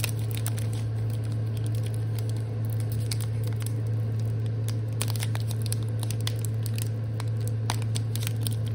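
Foil wrapper of a Pokémon trading-card booster pack crinkling and crackling as fingers work at it, trying to tear it open, with a steady low hum underneath.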